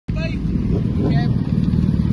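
Motorcycle engine idling steadily at low revs.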